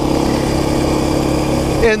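KTM 530 EXC-R single-cylinder four-stroke dirt bike engine running at a steady pace while riding along a paved road.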